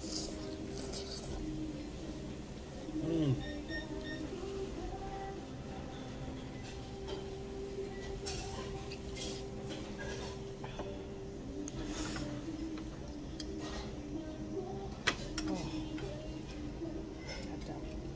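Restaurant background music with sustained tones, and faint background voices. Over it come sounds of eating noodles with chopsticks from a small bowl: slurps and a few sharp clicks, with a louder sound about three seconds in.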